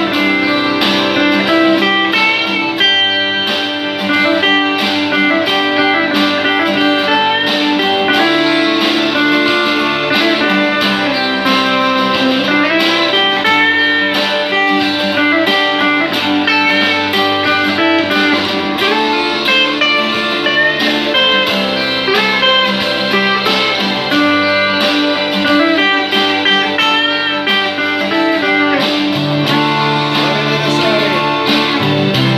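Electric guitar playing a continuous melodic instrumental passage of changing single notes over sustained low notes.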